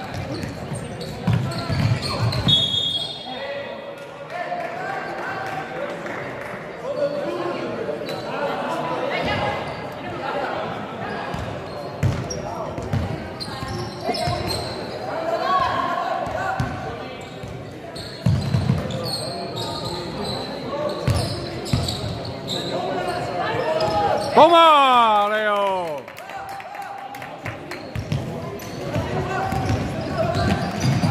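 Basketball being dribbled on a hardwood court in a large echoing hall, with scattered shouts and chatter from players and spectators. About 25 seconds in, one loud drawn-out shout falls in pitch.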